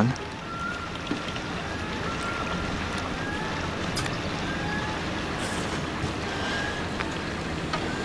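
Steady wind and water noise around a boat, with a low hum underneath. A string of short, faint, high chirps comes about every second.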